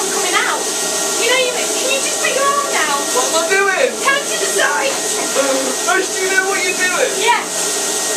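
Spray-tan machine's blower running steadily with a constant hiss of spray from the gun, which is left running nonstop.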